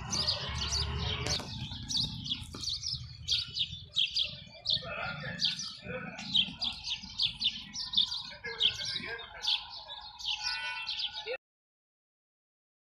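Small birds chirping, a quick run of short high chirps two or three a second. The sound cuts off suddenly near the end.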